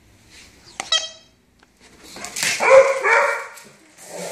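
A dog barking in a drawn-out, broken run from about two seconds in, after a sharp click with a brief ringing tone about a second in.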